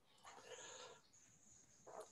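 Near silence: a pause in speech over a webcam microphone, with a faint short hiss in the first second and a faint high steady tone.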